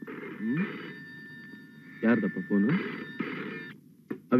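Telephone ringing in short repeated bursts, the last two close together like a double ring, with a brief spoken word over it.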